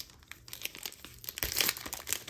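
Foil wrapper of a trading-card pack being torn open and crinkled by hand: a string of crackles, busiest about one and a half seconds in.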